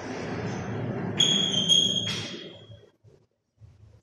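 Chalk writing on a blackboard: scraping strokes, with a high steady squeak from the chalk about a second in that lasts about a second.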